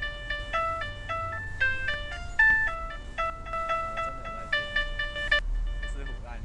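Computer-generated tones of a Flash sound experiment: a plain, chime-like electronic melody stepping between pitches at about three notes a second, produced in response to movement in the camera's view. The notes cut off suddenly near the end, leaving a low hum.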